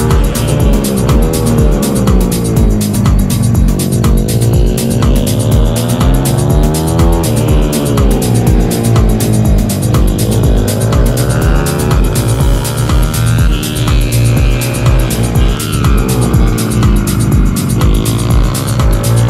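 Pitbike engine revving up and easing off in turn as it laps a track, its pitch rising and falling every few seconds. Background music with a steady beat is laid over it.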